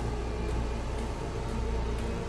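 Low, steady rumbling drone with faint held tones above it: a sci-fi soundtrack bed, without speech.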